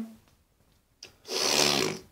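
A person drawing one sharp breath in, lasting under a second, after a short pause with a faint click just before it.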